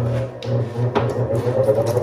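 Diamond Pacific Genie lapidary grinder running, with a steady motor hum and a higher whine that rises a little near the end as a stone piece is held against a diamond wheel.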